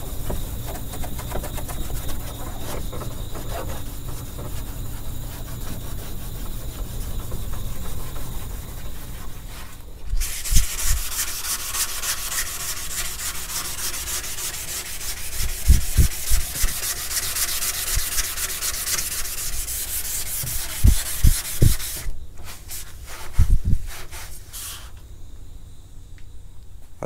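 A maroon Scotch-Brite pad scrubbed by hand over painted sheet metal in quick strokes, scuffing it so the new paint will bite. About ten seconds in it gives way to a louder, hissier hand sanding of a primed panel with a few low thumps, and it goes quieter for the last few seconds.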